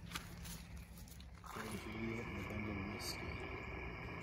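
A quiet single-sideband voice from the Icom IC-705 transceiver's speaker on the 40-metre band, thin and hissy with no treble. It begins about a second and a half in: a distant station answering the call.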